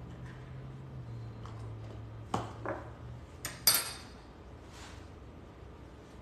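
A spoon and small bowls being handled on a countertop: a few scattered clinks and clicks, the loudest nearly four seconds in. A faint low hum runs under the first half.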